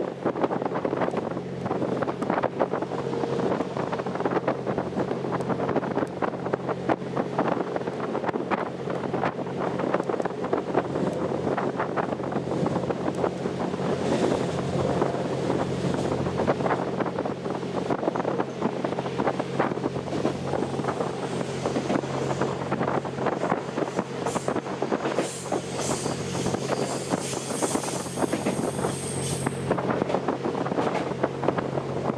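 Wind buffeting the microphone on the open observation deck of the moving Twilight Express Mizukaze train, over the train's steady running noise with a low drone. A high-pitched squeal joins in for the last few seconds as the train approaches a station.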